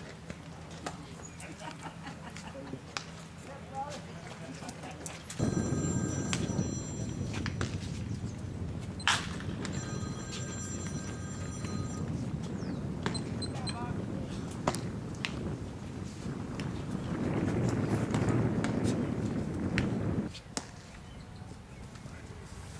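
Baseball field sound during play: distant voices, a low rumble through most of the middle, and one sharp crack about nine seconds in.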